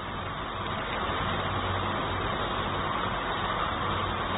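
Steady background noise, an even hiss with a faint low hum, with no voice.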